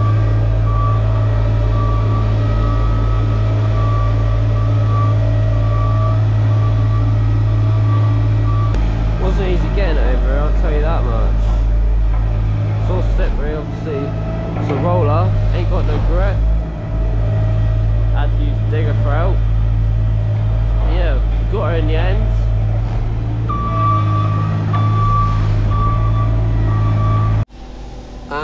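Hamm HD12 tandem vibratory roller's diesel engine running steadily with a deep hum as it compacts rubble. Its reversing alarm beeps for the first eight seconds or so and again near the end, and the sound cuts off suddenly just before the end.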